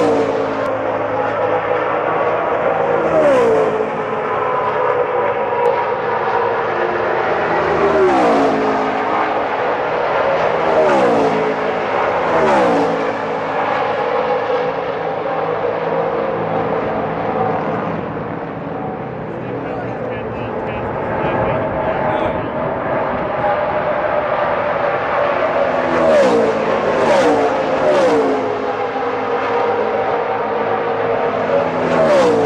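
NASCAR stock-car V8s running laps: a steady engine drone with a series of pass-bys, the engine pitch falling as each car goes by. There are several close together about a third of the way in and again near the end.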